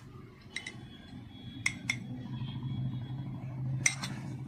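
A metal spoon clinking lightly against a glass bowl and a steel pot as chat masala is spooned out: two small pairs of clinks in the first two seconds and a sharper clink near the end. A steady low hum runs underneath.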